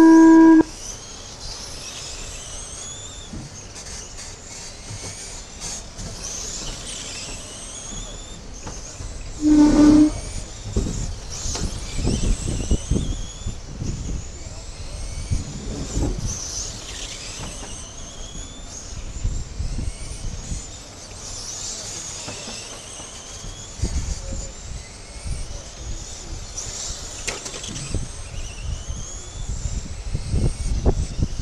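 An electronic race-start tone from the timing system sounds for about half a second, and a second beep comes about ten seconds in. Between and after them, the electric motors of 1/10-scale RC late model cars whine high, rising again and again in pitch as the cars accelerate around the oval.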